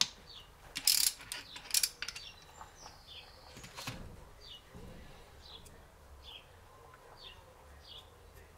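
Ratchet wrench and socket clicking and clattering on a gearbox bolt, with a few sharp metal clicks in the first two seconds and then quieter handling. A bird chirps about once a second in the background.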